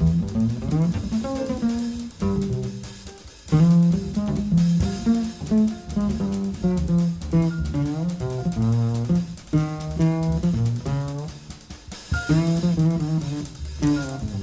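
Jazz trio music: a plucked double bass plays runs of quick melodic notes over a drum kit, in phrases broken by short pauses.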